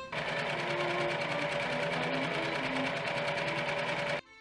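Singer electric sewing machine running at a steady speed, stitching fabric with a rapid, even stitching rhythm; it stops suddenly at the very end.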